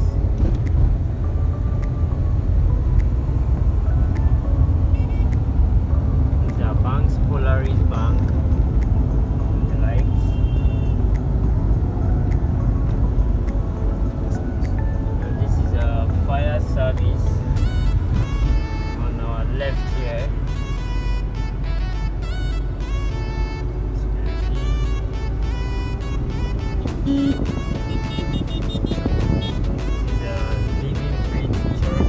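Steady low rumble of a car driving, heard from inside the cabin, with music with singing playing over it.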